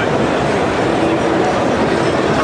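Crowd noise in a large, packed exhibition hall: many distant voices blending into a steady din.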